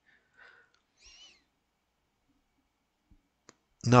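Near silence between stretches of narration: a few faint mouth or breath sounds and two small clicks, with no road or engine noise. A man's voice starts just before the end.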